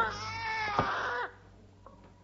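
A high-pitched, wavering cry whose pitch falls in short glides, then cuts off suddenly about a second and a quarter in.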